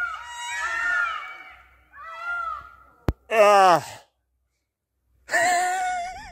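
Peacocks (Indian peafowl) calling: a few high, arching calls, then one loud scream that falls in pitch about three seconds in, just after a sharp click. After a short silence, a wavering tone comes in near the end.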